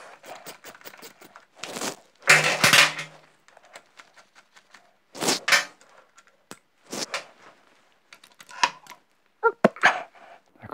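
A spanner clinking and knocking on bolts and the moped's steel frame while a tightly done-up bolt is worked loose: a scattered series of short, sharp metallic knocks, the loudest about two to three seconds in and again around five seconds.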